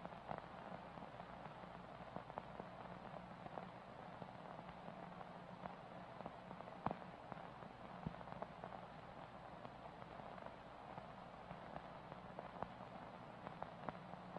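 Faint static hiss from camcorder tape footage, with a low steady hum and scattered crackling clicks, one sharper click about halfway through.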